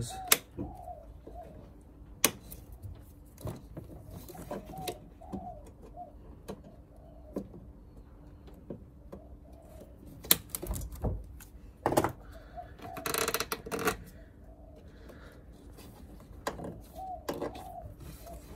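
Side cutters snipping the excess ends off plastic cable ties: a few sharp clicks spaced seconds apart, with quieter handling of wiring in between.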